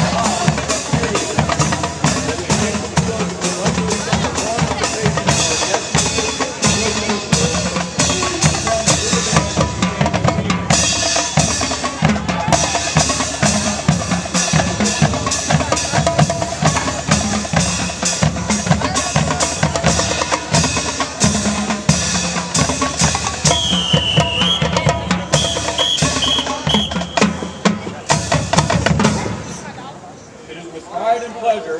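High school marching band playing, carried by dense drumming from snare and bass drums. The playing stops shortly before the end.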